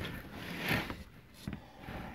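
Faint handling noise of a plastic hand-held vacuum being picked up and moved on a table: a brief rustling scrape, then a soft knock a little later.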